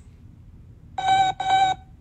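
Two short electronic beeps in quick succession, a cartoon robot's "Beep! Beep!", starting about a second in, each a steady buzzy tone of the same pitch.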